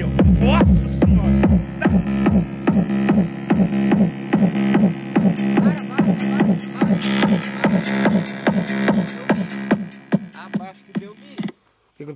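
A loud song with a heavy beat and vocals plays through a Fiat Uno's car sound system of two 15-inch subwoofers, midrange speakers and horn tweeters. About four seconds in, the deep bass vanishes while the mids and vocals keep playing: the subwoofers have burned out, or their amplifier module, in the owner's words. The music cuts off shortly before the end.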